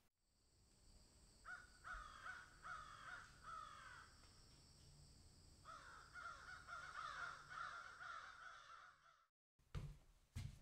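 Crows cawing: a run of about five harsh caws, then after a short pause a longer, denser run of caws. It all cuts off suddenly near the end.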